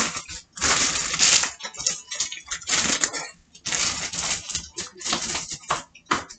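Plastic packaging rustling and kitchen items clattering in a series of irregular bursts.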